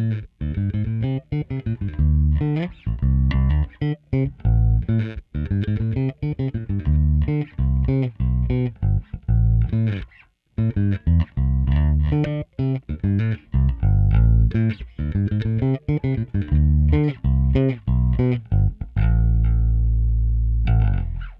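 Harley Benton MV-4MSB short-scale electric bass, its two pickups wired in parallel with the tone control fully open, played fingerstyle: a line of separate plucked notes with short gaps, a brief pause about halfway, ending on one long held note. It is recorded direct through a DI.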